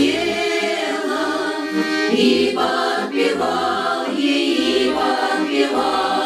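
A women's folk choir singing together, accompanied by an accordion.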